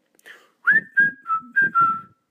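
A person whistling a short tune of about five notes, the first sliding up and the rest stepping lower, starting about half a second in.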